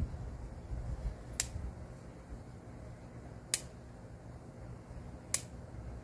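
Hand pruning shears snipping through vine stems three times, sharp single clicks about two seconds apart, over a steady low rumble.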